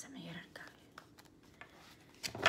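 Quiet room tone with a few faint, light clicks or taps, spaced out.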